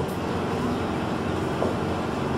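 Steady background hum and hiss of a hall's room noise, with no distinct events.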